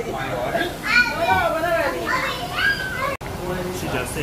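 High-pitched voices talking and calling out, with pitch rising and falling. The sound cuts out abruptly for an instant about three seconds in.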